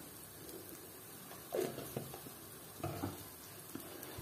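Steel spoon stirring thick, sticky rice halwa in a metal pot. A few short, soft scrapes start about a second and a half in.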